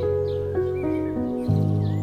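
Calm, slow instrumental music of held notes that shift every half second or so, with faint short bird chirps over it.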